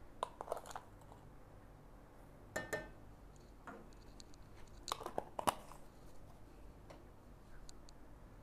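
Faint clicks and scraping as a small scoop of espresso-machine cleaning powder is measured and tipped into stainless steel milk pitchers, with a few brighter clinks of the scoop against the metal near the middle.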